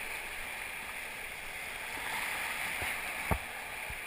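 Whitewater rapids rushing steadily around an inflatable kayak, with a single sharp knock about three seconds in.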